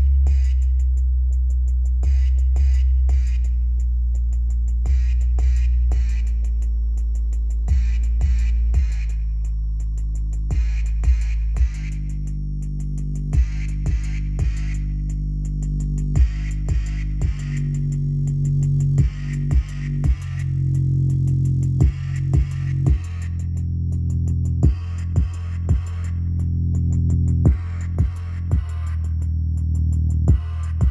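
JBL Charge 5 portable Bluetooth speaker playing a sub-bass woofer excursion test track, its passive radiator moving hard. Sustained deep bass notes step from one pitch to another under an electronic beat, with sharp drum hits that come more often in the second half.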